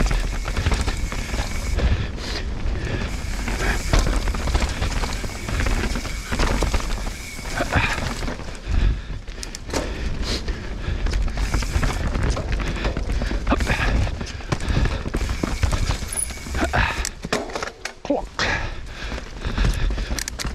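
Mountain bike descending a dirt singletrack: wind buffeting the camera microphone, tyres rolling over dirt, and the bike's chain and frame rattling over bumps.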